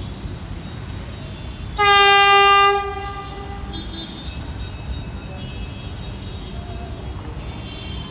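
Vande Bharat Express (Train 18) trainset sounding its horn as it approaches: a single loud, steady blast of about a second, starting about two seconds in, its tone fading away over the next second. A steady low rumble sits underneath throughout.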